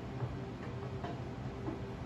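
Quiet music from a television heard across the room: sustained low notes with light ticking sounds over them.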